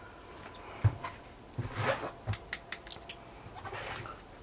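Faint footsteps and handling knocks inside a small room: a dull thump about a second in, then a scatter of light clicks around the middle.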